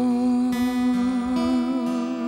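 A man singing one long held note, with light vibrato, over a few ukulele strums.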